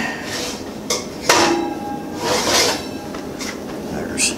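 Metal baking sheet and oven rack being pulled out of an oven: a sliding scrape, then a sharp metallic clank that rings on about a second and a half in, then another scrape.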